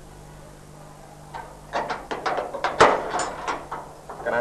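A metal gate's padlock and latch being handled: a quick run of sharp metallic clanks and rattles, starting about a second in, the loudest near the three-second mark, over a faint steady hum.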